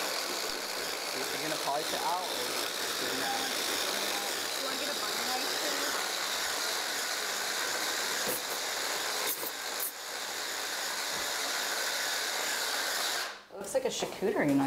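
Immersion blender fitted with a chopper bowl running steadily, blending thick medjool date and cocoa frosting. The motor dips briefly about ten seconds in and stops just before the end.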